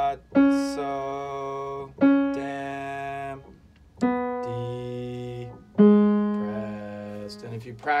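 Single piano notes struck one at a time, four in all about two seconds apart, each followed a moment later by a man singing one held syllable to match its pitch. The last note is lower than the others.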